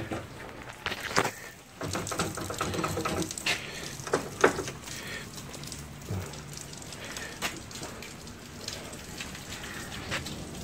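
A few sharp clicks and knocks among rustling handling noise, from a hand working the chrome sissy bar's mounting hardware on the motorcycle.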